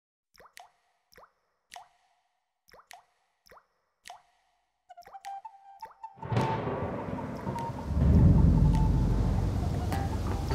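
Single water drops plopping, one at a time and irregularly spaced, over silence for the first five seconds. About six seconds in, orchestral film music swells in and grows louder.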